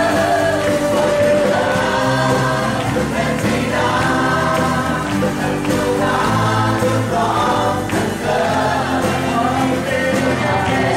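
Live worship song: a man singing lead into a microphone while strumming an acoustic guitar, with other voices singing along.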